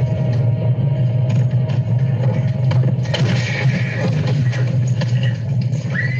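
Music from a film soundtrack over a steady low rumble, growing fuller and busier about halfway through.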